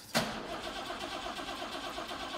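BMW 2800 CS's 2.8-litre straight-six starting up through a newly fitted stainless-steel exhaust system: it catches with a sudden burst just after the start, then runs steadily.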